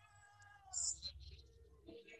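A woman's voice holds a faint, drawn-out sung note that slides down in pitch just before the one-second mark. A short breathy hiss comes near the middle.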